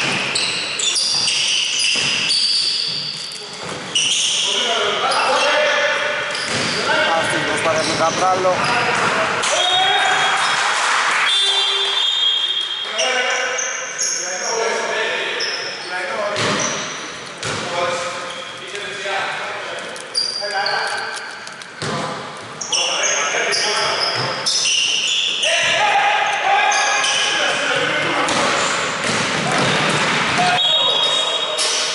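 Basketball game in a large gym: a ball bouncing on a wooden court and players' indistinct voices calling out, echoing through the hall.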